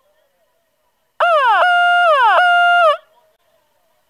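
A loud siren-like tone of under two seconds, starting about a second in. It swoops down twice, each time settling on a held note, and drops away as it cuts off.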